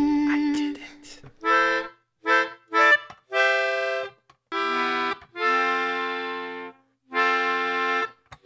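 Melodica-style reed keyboard blown through a mouth tube, playing a slow phrase of single notes: three short notes, then four longer held ones with brief breaks between them.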